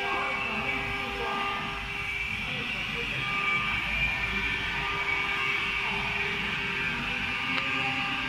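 Steady running noise of workshop machinery, a constant low rumble with a steady hum.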